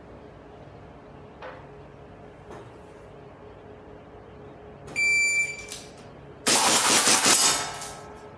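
Shot timer's start beep, one high electronic tone of under a second, then about a second later a rapid string of airsoft pistol shots with hits on the steel plate targets, lasting about a second and a half.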